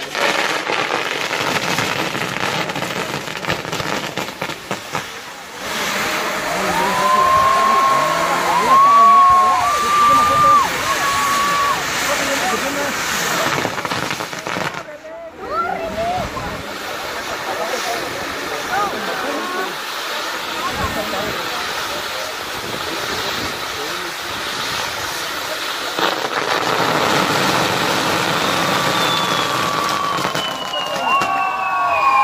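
Pyrotechnic castillo (fireworks tower) burning: a steady loud hiss of spark fountains and wheels, with crowd voices over it and a few whistled tones about a third of the way in.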